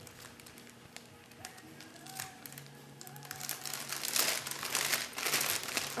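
Plastic packaging crinkling and rustling as craft supplies are handled. It is faint at first and gets busier and louder in the second half.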